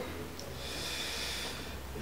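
A quiet breath through the nose by a man pausing between sentences, over faint room hiss.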